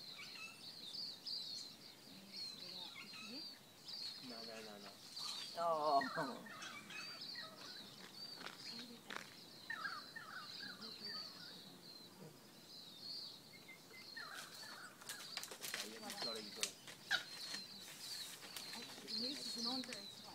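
Birds chirping steadily in the background, many short high calls repeating, with a louder call about six seconds in. A run of sharp clicks and rustles comes about fifteen to seventeen seconds in.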